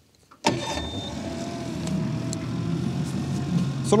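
Mercury F30 ELHPT EFI three-cylinder fuel-injected outboard starting on its electric starter about half a second in, catching at once and running on at a steady idle.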